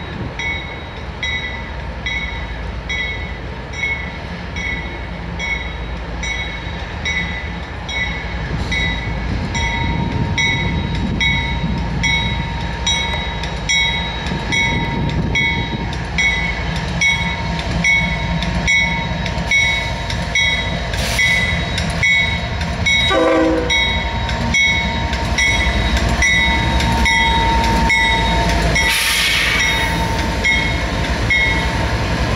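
GE ES40DC locomotive with its GEVO V12 diesel approaching and passing close by, its engine and wheel rumble growing louder about a third of the way in and staying loud, with a steady whine. A bell rings about twice a second throughout, a brief horn note sounds about three-quarters of the way through, and a hiss of air comes near the end.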